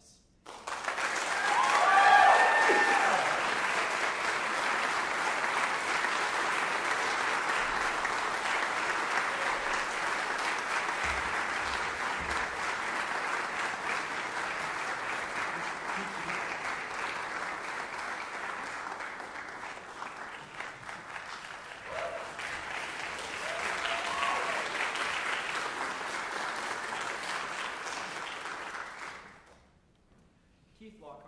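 Audience applauding steadily for nearly the whole time, loudest near the start and fading out near the end, with a few voices cheering near the start and again later.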